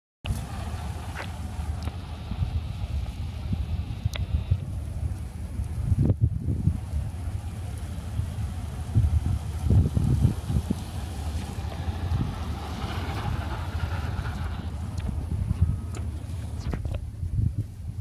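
Quantum 614 power wheelchair driving on concrete: its electric drive motors running and solid tyres rolling, with wind buffeting the microphone.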